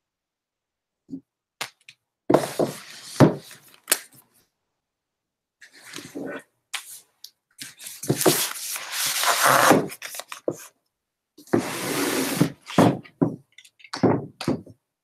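Books being handled and moved on a shelf: several separate bursts of rustling, sliding and knocking with dead silence between, the longest about eight seconds in.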